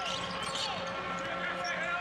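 Live arena sound of a college basketball game on a hardwood court: a steady crowd murmur with a basketball being dribbled.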